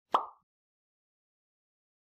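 A single short pop sound effect, sharp at the onset and dying away within a fraction of a second, just after the start.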